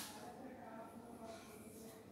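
A piece of chalk taps once onto a blackboard at the start, followed by faint chalk strokes on the board as a circled number is written, under faint voices in the room.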